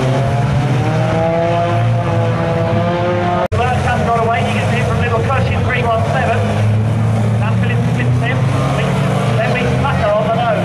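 Several banger racing cars' engines running and revving on the track. In the first few seconds one engine's note climbs slowly as it revs up. After a brief dropout in the sound, several engine notes rise and fall over one another.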